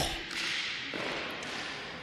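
A large hall's steady hiss, with faint taps and shuffles from the fencers' canes and feet on the sports floor.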